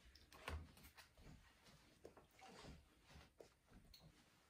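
Near silence: room tone with a few faint soft taps.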